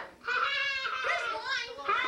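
A young child's high-pitched voice babbling or calling out without clear words, with a brief pause just after the start.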